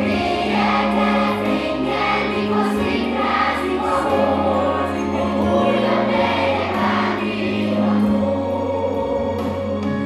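Children's choir singing a Christmas song together over an instrumental accompaniment whose low held notes change every second or so.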